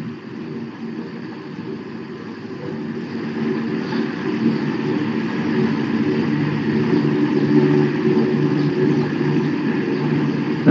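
Steady low machine hum with several held tones, growing louder about three seconds in and then staying up.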